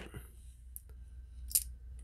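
Faint small clicks of needle-nose pliers working brass contacts out of a motor contactor's plastic armature, with one sharper metallic click about one and a half seconds in.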